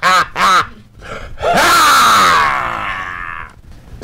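A couple of short laughs, then a long, drawn-out vocal cry from a man that falls in pitch and sounds strained and breathy, lasting about two seconds.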